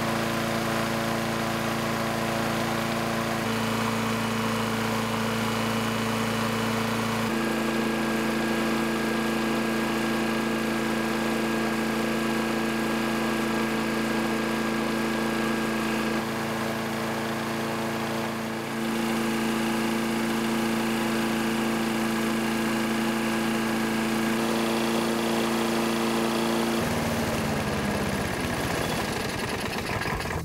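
Toro Recycler lawn mower's single-cylinder engine running steadily at a fixed throttle with its governor disconnected, at about 3,360 RPM, with a few abrupt jumps in pitch where takes are spliced together. Near the end the engine is shut off and its pitch falls away as it winds down.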